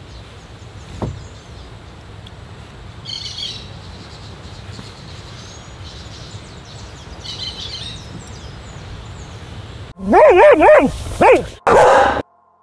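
Birds chirping, a couple of short bursts of calls, over a steady rush of ocean surf. Near the end, a loud wavering voice rises and falls several times.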